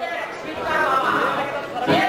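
Voices speaking, with one sharp hit just before the end.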